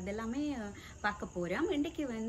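A woman talking, with a faint steady high-pitched tone in the background.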